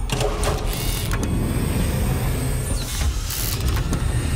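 Film sound effects: mechanical whirring and hissing swishes as a sci-fi vault door slides open, over a steady low rumble. A few sharp swishes come in the first second, and a longer hiss comes near the end.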